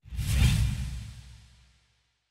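Whoosh transition sound effect with a deep rumble underneath, starting suddenly and fading away over about a second and a half.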